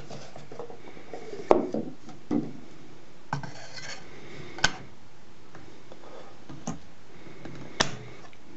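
A cylinder record being handled and slid onto the mandrel of an Edison Standard Model A phonograph: light scraping and four sharp knocks, the loudest about a second and a half in and near the middle.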